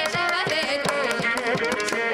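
Carnatic vocal music: a girl singing with ornamented gliding pitch, over a string of mridangam and ghatam strokes, with a violin following the melody.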